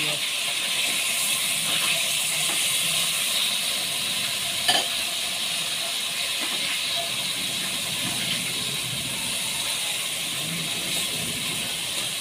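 Pork steaks sizzling in their sauce in a pot over a gas burner: a steady hiss, with a single sharp knock a little under five seconds in.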